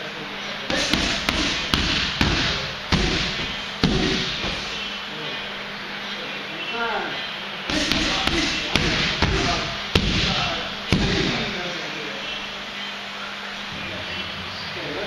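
Gloved strikes smacking into Thai pads in two quick flurries, one starting about a second in and one just past the middle, each about seven or eight sharp hits.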